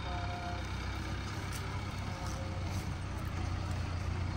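Farm tractors' engines running steadily in the field, a low even drone.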